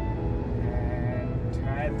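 Background music over the steady road and engine noise of a moving car, heard from inside the cabin. A man's voice starts near the end.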